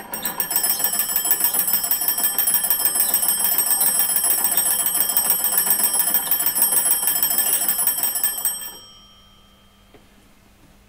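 Antique hand-cranked magneto telephone ringing its twin bell gongs as the crank is turned: a loud, continuous fast trill. It stops near the end, leaving the gongs to ring away faintly.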